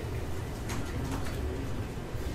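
Room tone: a steady low rumble, with a few faint clicks from a laptop keyboard about a second in, as the terminal screen is cleared.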